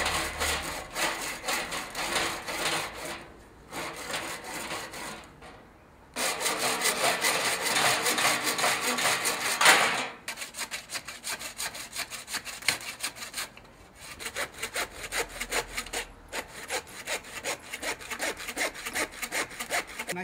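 Handsaw cutting through a deer skull clamped in a skull-cutting jig: quick back-and-forth strokes of the blade through bone. The sawing stops briefly several times and is heaviest from about six to ten seconds in, then goes on in lighter strokes.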